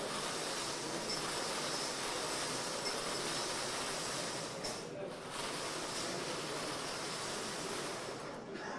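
A steady hiss with no clear pitch or rhythm, dipping briefly about five seconds in.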